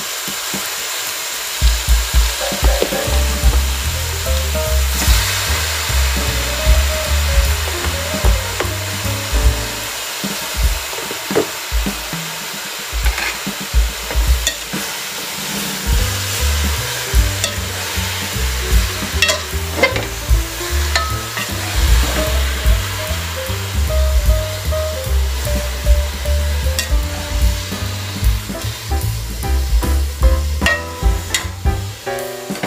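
Oyster mushrooms sizzling as they are stir-fried in an aluminium pot, with a spatula scraping through them and clicking against the pot now and then. Background music with a steady bass beat plays underneath.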